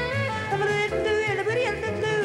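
Swing jazz band playing: a tenor saxophone lead line with sliding, bending notes over an upright bass walking steadily underneath.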